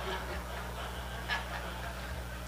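Scattered quiet chuckles from a congregation over a steady low electrical hum.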